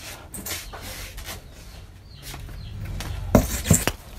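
A chair being moved and set down: light scrapes and clicks of handling, then two sharp knocks near the end as it is put in place.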